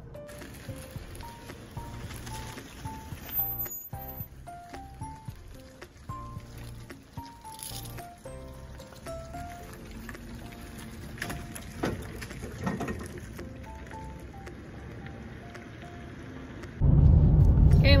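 Background music: a slow melody of single held notes over a soft low accompaniment. About seventeen seconds in it cuts suddenly to much louder, steady road noise inside a moving car.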